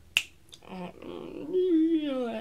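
A single sharp finger snap just after the start, followed by a fainter click, made while trying to recall a name.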